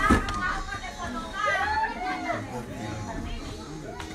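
Children's voices calling and chattering, with a single knock right at the start.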